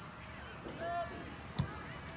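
A single thud about a second and a half in, a soccer ball struck by a kick as the goalkeeper puts it back into play, after a spectator's short call.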